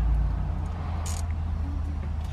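A brief high scrape or click of a nut driver seating on a small dash-trim screw about a second in, over a steady low hum in the truck cab.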